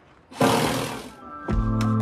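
A short rushing noise, then background music starts about one and a half seconds in, with a steady bass note under sustained chords.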